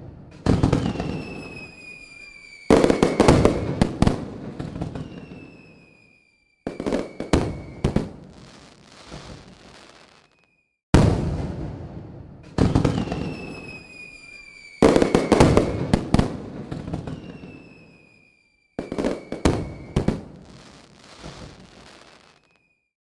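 A looped fireworks-style explosion sound effect: sharp bangs that trail off into crackling, with falling whistles leading into some of them. The same sequence repeats about every twelve seconds, with brief silent gaps.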